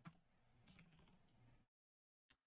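Near silence with a few faint computer keyboard clicks, about three in the first second, then dead silence.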